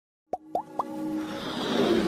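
Logo-animation sound effects: three quick plops, each gliding up in pitch and each higher than the last, then a whoosh that swells toward the end over a held low tone.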